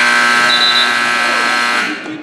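Gym scoreboard buzzer sounding one loud, steady blast of about two seconds that cuts off near the end, signalling the end of a wrestling period.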